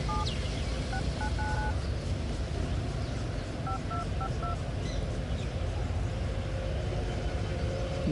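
Dialer keypad tones from a YU Yureka Plus smartphone as a phone number is tapped in: short two-tone beeps in three quick runs, a pair at the start, four about a second in and four more near the four-second mark. A steady low rumble underlies them.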